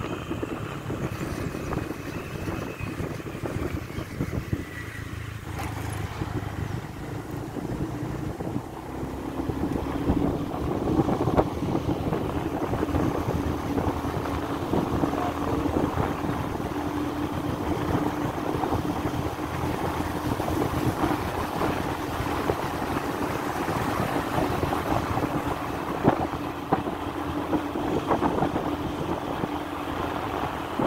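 Motorcycle on the move, heard from the rider's position: the engine runs at a steady cruise under wind rushing over the microphone. A steady low hum holds from about nine seconds in.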